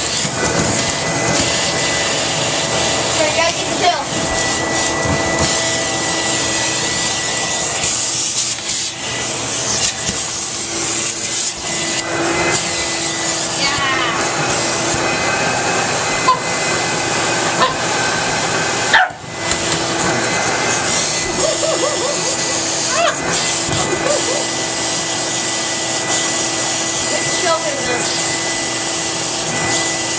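Vacuum cleaner running steadily through its hose and floor wand, a constant rush with a fixed whine, dipping briefly once about two-thirds of the way through. Short barks from a Shih Tzu puppy playing with the wand come in now and then.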